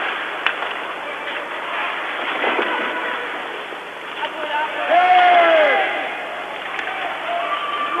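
Ice hockey arena sound: a steady crowd murmur with a few faint knocks from the play, heard through a muffled, band-limited old TV broadcast soundtrack. About five seconds in, one drawn-out voice-like call rises and falls.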